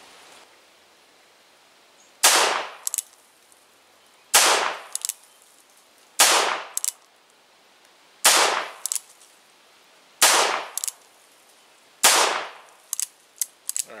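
Cimarron Lightning .38 Special revolver firing six shots of Magtech 158-grain lead round nose, about two seconds apart, each shot followed by light clicks of the hammer being cocked. A quick run of small clicks near the end.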